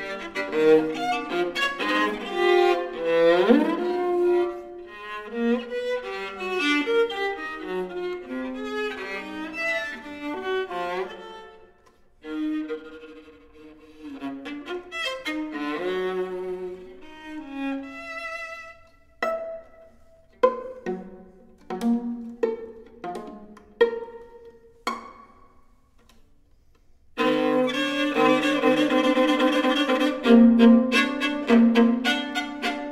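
Solo viola playing a contemporary piece: fast bowed passages with an upward glide early on, then a run of short, sharp, plucked (pizzicato) notes in the second half. After a brief pause near the end, loud bowed double stops.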